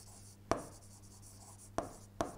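Pen writing on the glass of an interactive display, with two sharp taps of the pen tip, about half a second in and near the end, over a faint steady hum.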